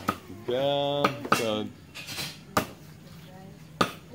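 Knives chopping and clinking on cutting boards and bowls: about five sharp, irregularly spaced knocks, with a voice heard briefly early on.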